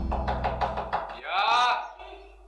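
A quick run of knocks on a door through the first second, over guitar music that fades out, followed by a man calling out in answer.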